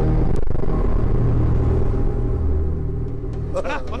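Dramatic TV-serial background score: a low, sustained drone with a single sharp hit just after the start. Near the end a wavering, wailing voice comes in over it.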